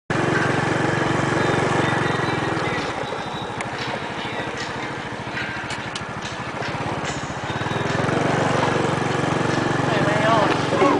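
An engine running steadily. It is louder at the start, drops back for a few seconds in the middle and grows louder again near the end.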